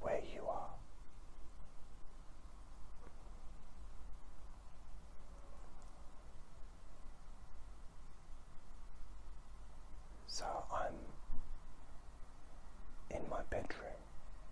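Soft whispered voice: a short whispered phrase near the start, another about ten seconds in and one near the end, with quiet pauses between, over a low steady hum.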